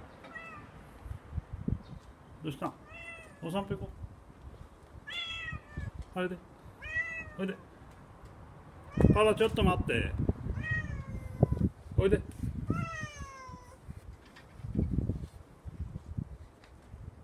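Kitten meowing over and over: about a dozen short, high calls that each fall in pitch, some in quick pairs. Dull low thuds come around nine seconds in and again near the end.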